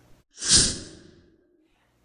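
A single short, sigh-like breath out from a person, starting sharply about a third of a second in and fading away over about a second.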